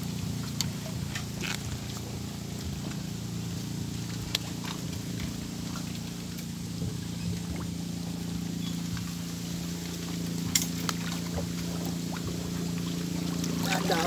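A steady, low motor drone runs throughout, with several sharp clicks and taps as fishing tackle is handled.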